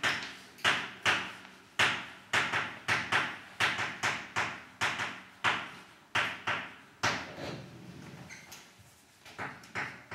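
Chalk tapping and scraping on a chalkboard as a formula is written: a quick run of short, sharp strokes, two or three a second, growing fainter in the last few seconds.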